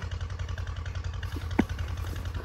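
An engine idling steadily with a low, even pulse, with one short sharp knock about three quarters of the way through.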